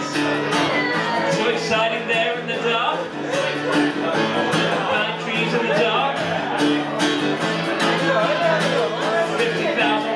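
Live rock song: electric guitar strummed steadily under a man's singing voice.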